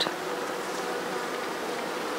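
Honeybees crowded on the comb of an open hive buzzing in a steady hum.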